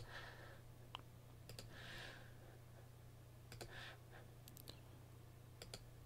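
Faint computer mouse clicks, scattered singly and in quick pairs, as points of a polygonal lasso selection are placed, over a low steady hum.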